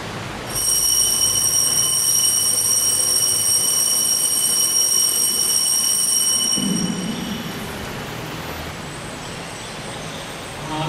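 Altar bells rung at the elevation of the chalice during the consecration at Mass: a high metallic ringing of several steady pitches that starts about half a second in and dies away around seven seconds.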